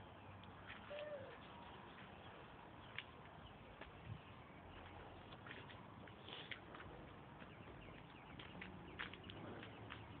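Faint outdoor background with scattered light clicks and ticks, and a short call about a second in that sounds like a bird's.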